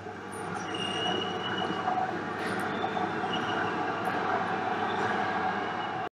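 Steady background noise in a room, with a few faint high whistle-like tones coming and going.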